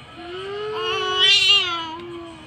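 A baby's voice in one long, drawn-out cry that rises a little, grows loudest near the end and trails off.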